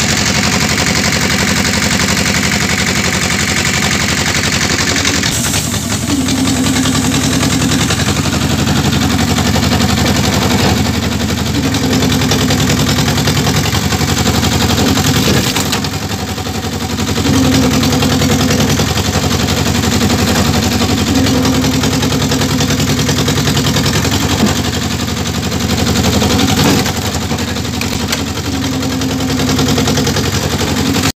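Motor of a powered firewood splitter running steadily, with a strained higher tone that comes and goes about seven times, each lasting a second or two, as the steel wedge is forced down through logs. Now and then a short crack as a log splits.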